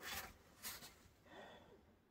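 Near silence: room tone with three faint, brief noises.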